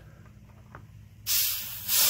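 Nitrogen holding charge hissing out of a Senville mini split's copper line set as the plastic cap on its flare fitting is unscrewed: a sudden sharp hiss starting about a second and a quarter in, easing off, then picking up again near the end. The escaping pressure shows the line is sealed, with no leaks.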